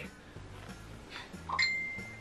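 A single high, clear ding about one and a half seconds in, holding for under a second as it fades, after faint handling noise.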